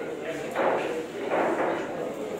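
Voices talking in the background, with no clear words: spectator chatter around the table.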